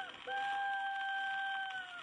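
Imitation of a rooster's crow on an old acoustic 78 rpm recording: two short gliding notes, then one long held note that sags in pitch as it ends.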